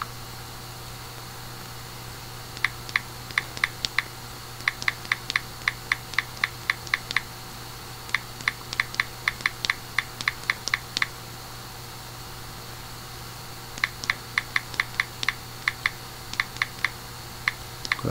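Typing on a computer keyboard: four runs of quick keystrokes with short pauses between them, over a steady low hum.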